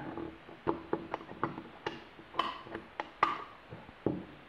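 Irregular small clicks and light knocks of a Benelli M2 trigger group being seated into a Franchi Affinity shotgun receiver and shifted to line up its pin hole, with two sharper clicks in the second half.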